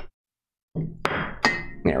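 Objects being set down on a wooden bar counter: two sharp knocks, about a second and a second and a half in, with some handling clatter starting just before them.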